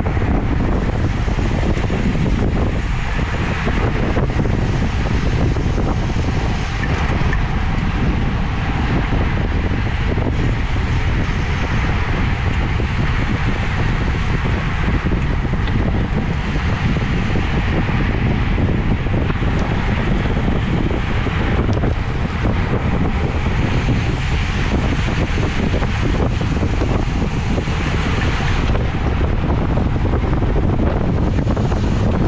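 Steady wind noise rushing over the microphone of a bike-mounted action camera moving at about 28 mph.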